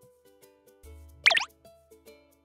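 Light ukulele background music, broken about a second and a quarter in by one loud, short cartoon 'plop' sound effect with a quick pitch glide.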